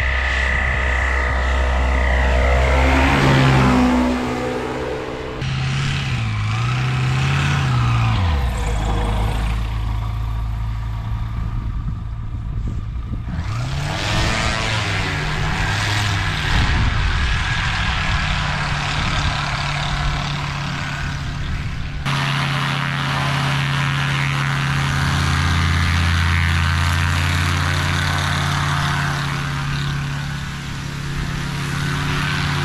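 Light single-engine propeller planes running: one passes low with its engine pitch falling as it goes by, then engines running at low power as the planes taxi on the grass strip, in several clips joined by abrupt cuts.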